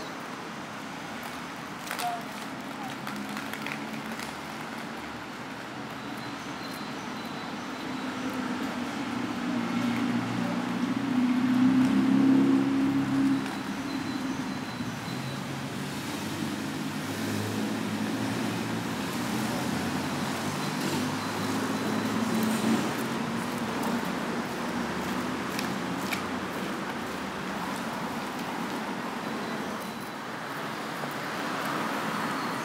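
Street traffic noise, with a motor vehicle driving past that is loudest about twelve seconds in, and another fainter pass a little after twenty seconds.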